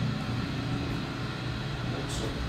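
Modernized 1983 Otis traction elevator heard from inside the cab as it travels: a steady low hum with a faint even rushing noise over it.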